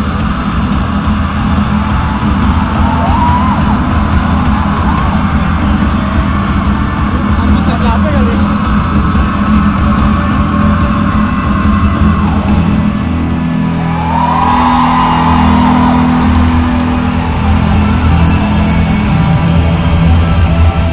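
A rock band playing live through a stadium PA, heard from far up in the stands, with heavy, steady bass under it.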